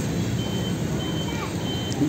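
Three short, high electronic beeps, evenly spaced about 0.6 seconds apart, over steady outdoor background noise.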